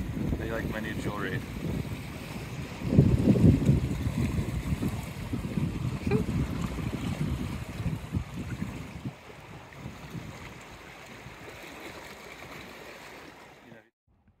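Wind buffeting a phone microphone on an exposed seashore. There is a strong gust about three seconds in, and it eases off after about nine seconds.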